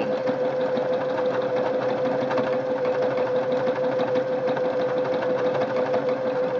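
Singer Quantum Stylist 9960 computerized sewing machine running at a steady speed, stitching out a programmed lettering pattern: an even motor tone with a rapid run of needle strokes.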